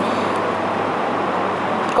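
A steady, even rushing noise with no rise or fall.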